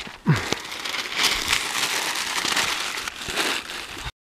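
Newspaper being crumpled and crinkled by hand, a dense papery crackle.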